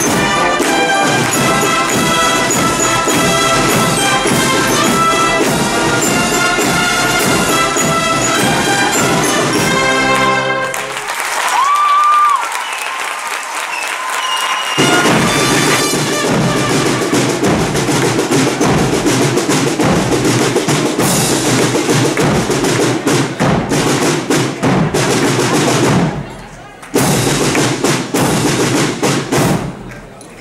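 Large wind band of brass and percussion playing, with sustained chords at first. About ten seconds in, the low brass drops out for a few seconds. The full band then comes back with busy percussion.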